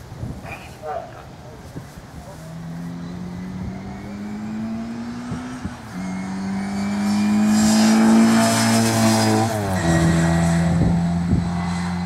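Heavily modified 1380cc MG Metro's four-cylinder A-series engine at full throttle on a sprint run, growing louder as the car approaches. The note climbs and steps down at a gear change about six seconds in, is loudest near nine seconds, then drops sharply in pitch as the car passes and runs on steadily as it goes away.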